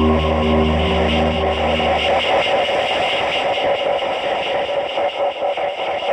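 Harsh electronic noise in a dark ambient score: a grainy, static-like noise texture over a steady low drone. The drone drops away about two seconds in, leaving a flickering, fluttering noise.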